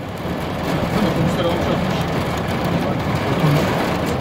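Steady rushing noise of a heavy storm, wind and driving rain, blended with a running vehicle engine, with faint voices underneath.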